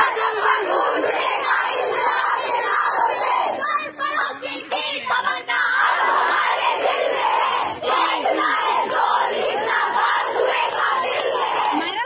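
Large crowd of women shouting protest slogans together, many voices overlapping in a loud, continuous din.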